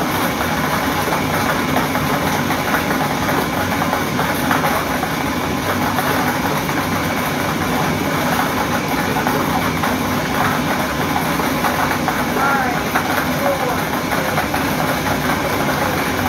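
Lottery draw machine running: a steady motor with plastic balls rattling and clicking as they tumble inside its clear drum.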